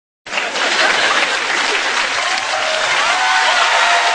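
Theatre audience applauding, a dense steady clatter of many hands that starts abruptly just after the beginning.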